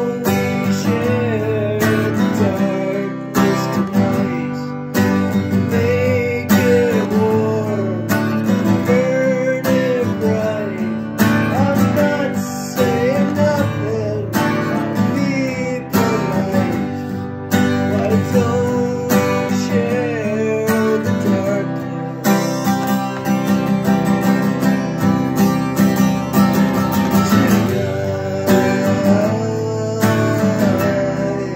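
A man singing to his own steadily strummed acoustic dreadnought guitar.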